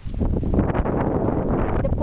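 Wind buffeting the phone's microphone in a loud, rumbling rush with crackly rustle, starting suddenly and lasting about two seconds.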